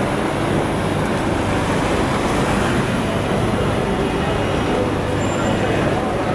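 Steady city street traffic noise with a low hum from vehicle engines.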